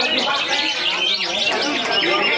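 Several caged green leafbirds (cucak hijau) singing at once, a dense, unbroken tangle of quick chirps and sweeping whistles.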